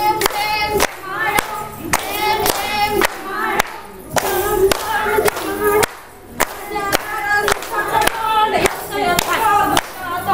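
A group of women singing a fugdi song together, with rhythmic hand clapping keeping a steady beat throughout.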